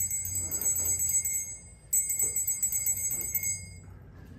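Altar bells, a set of small Sanctus bells, shaken in two rings: one at the start and another about two seconds in, each jingling for nearly two seconds. They mark the elevation of the consecrated host.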